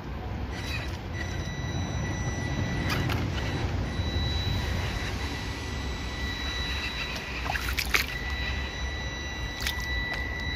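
SG1802 1/18-scale RC crawler's small electric motor and gearbox whining in a thin, steady tone as the truck wades through a shallow stream, over the steady sound of running, sloshing water. A few sharp clicks or knocks come about three seconds in and again near the eight-second mark.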